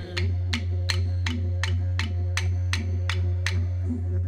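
Didgeridoo playing a steady low drone with a rhythmic pulsing pattern, accompanied by clapsticks struck about four times a second. The clapsticks stop shortly before the end.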